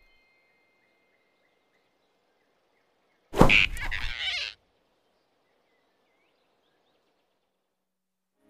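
A cartoon flying squirrel lets out one short, loud squeal, a little over a second long, about three seconds in, as it is grabbed by the throat. The rest is near silence.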